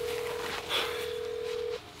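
Ringback tone of an outgoing smartphone call heard through the phone's speaker: one steady ring about two seconds long that stops shortly before the call is answered.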